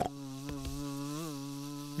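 Cartoon wasp buzzing as a sound effect: one steady, low, even buzz with a brief wobble in pitch a little past the middle.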